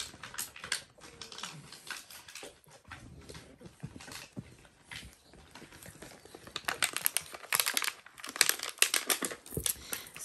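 Rustling, scratching and scattered clicks from Dalmatian puppies moving about on fabric bedding. The sounds are sparse at first and get busier and louder after about six seconds.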